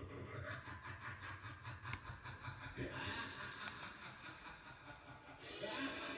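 A radio show playing faintly in the background: low talk with a chuckle, then music comes in near the end.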